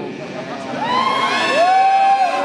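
Concert crowd cheering and whooping, many voices overlapping, growing louder about a second in.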